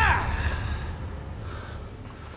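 A man's short, sharp shout at the very start, falling in pitch: a martial-arts yell as he kicks a heavy punching bag. A low rumble follows and fades away.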